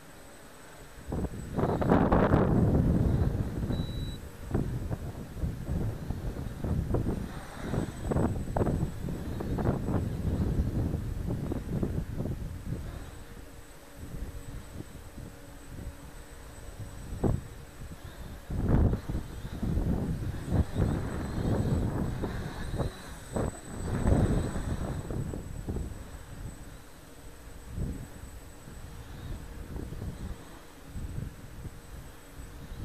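Wind gusting on the camera microphone, an irregular low rumble that swells and fades, strongest about two seconds in and again in a run of gusts near the end.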